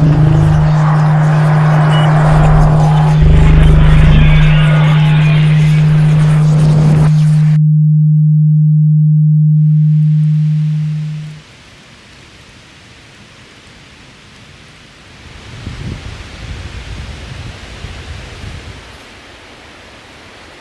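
A loud, steady low drone under a wash of noise and a few heavy low thuds. The noise cuts off abruptly about seven and a half seconds in, and the drone fades out a few seconds later. What follows is faint outdoor ambience with some rustling.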